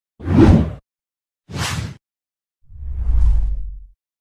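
Three whoosh sound effects of an animated logo intro, each swelling and fading: a short one near the start, a brighter, higher one about a second and a half in, and a longer, deeper one in the second half.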